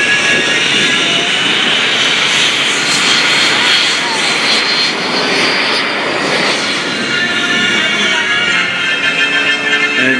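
Stearman biplane's radial engine running in flight, a loud continuous drone whose pitch sinks slightly around the middle as the plane moves past.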